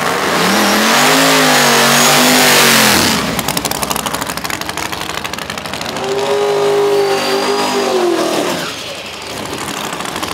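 Drag-race street car engine revved and held high for about three seconds with a hiss of spinning tires during a burnout, then dropping to a choppy, lumpy idle. A second rev is held for about two seconds starting about six seconds in, then falls back to idle.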